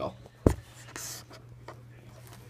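Handling noise from a camera being moved by hand: a single sharp thump about half a second in, then a brief soft rustle, over a steady low hum.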